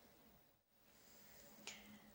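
Near silence, with one faint, short click near the end.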